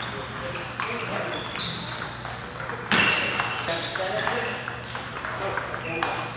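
Table tennis rally: the ball clicks sharply off paddles and the table, with more ball hits from neighbouring tables and voices echoing around a large hall. A louder burst comes about halfway through.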